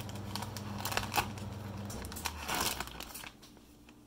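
Vacuum-sealed plastic bag crinkling and tearing as it is cut open with a small knife, with irregular crackles that die down about three seconds in. A low steady hum underneath stops about two seconds in.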